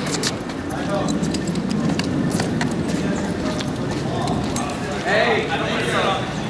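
Indistinct voices, strongest in the last two seconds, over a steady low rumble and scattered short clicks.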